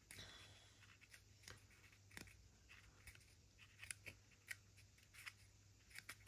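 Near silence with a low steady hum, broken by a few faint, scattered small clicks and rustles of fingers handling a card model wall and pressing a small 3D-printed window piece into it.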